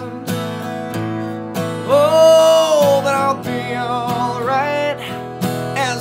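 Acoustic guitar strummed steadily under a man's solo singing voice in a slow country ballad. A long sung note is held about two seconds in.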